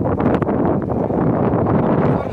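Wind buffeting the camera's microphone: a loud, steady rushing rumble.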